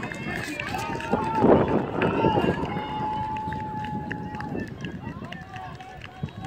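Distant shouted calls from voices at a ball field: a few short rising and falling yells, then one long held call lasting nearly two seconds.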